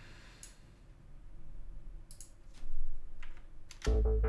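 A few sharp clicks at a computer keyboard and mouse over faint room tone, the loudest pair a little past halfway. Just before the end a filtered drum loop starts playing from the drum plugin.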